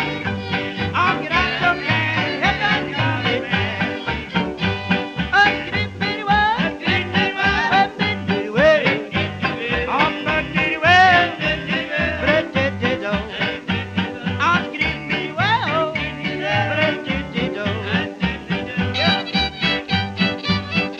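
Western swing band recording from the 1930s playing an instrumental passage: a lead line that slides and bends in pitch over a steady bass-and-rhythm beat.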